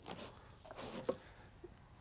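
Faint rustling of vinyl record sleeves being handled and flipped through in a store bin, with a soft click a little after a second in.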